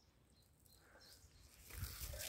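Near silence: quiet outdoor woodland ambience, with a faint soft low rustle coming in near the end.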